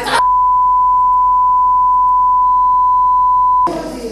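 A steady single-pitch electronic bleep held for about three and a half seconds, cutting off abruptly: a broadcast censor bleep laid over the speech.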